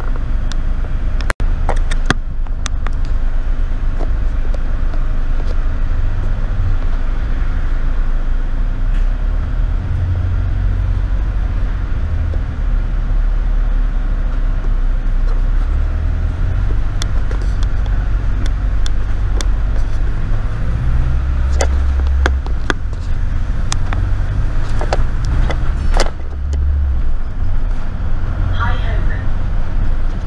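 A double-decker bus's engine and drivetrain rumbling, heard from the top deck while the bus drives through traffic. The low rumble swells several times as the bus pulls away and accelerates, with scattered clicks and rattles from the bodywork.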